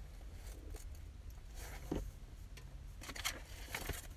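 Pencil scratching faintly on lined notebook paper in a few short strokes, over a low steady hum.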